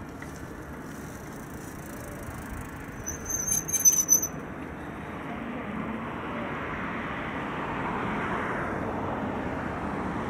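Road traffic passing on a bridge: a steady rush of tyre and engine noise that grows louder through the second half as a vehicle approaches. About three and a half seconds in there is a brief high-pitched squeal with a few clicks.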